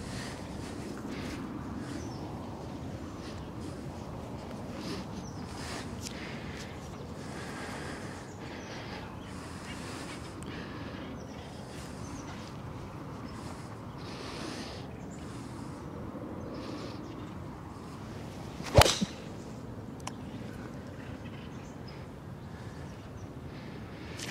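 A golf club strikes a ball off the tee: one sharp crack about three-quarters of the way through, over a steady low outdoor background.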